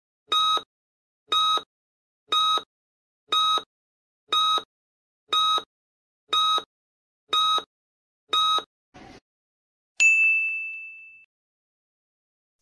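Countdown timer sound effect: short electronic beeps once a second, nine in all, then a single bright ding that rings out and fades over about a second as the count runs out.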